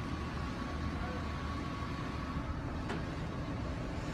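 Low, steady rumble of an idling car, heard from inside its cabin while it waits at a drive-through window. A faint high tone fades out about two and a half seconds in, and there is a faint click near the end.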